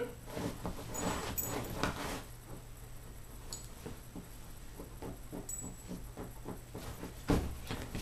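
Irregular scratching and rustling on the fabric cover of a dog bed, made to tease a puppy, who paws and noses at it. There is a single louder thump about seven seconds in.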